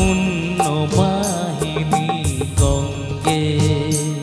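Live band music from a Bengali devotional song: a melody line over bass and a steady percussion beat.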